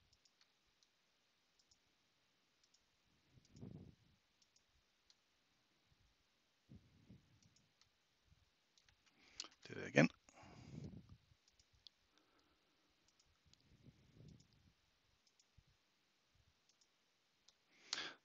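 Faint, scattered clicks of a computer mouse as blocks are placed in a drawing program, with a few soft low vocal sounds between them and a brief louder mutter about ten seconds in.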